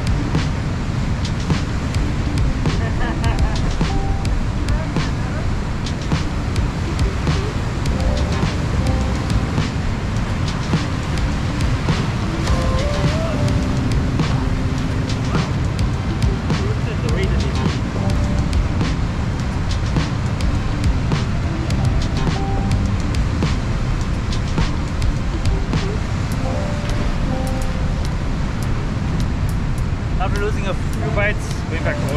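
Steady wind buffeting the microphone over breaking surf against the rocks, with faint background music.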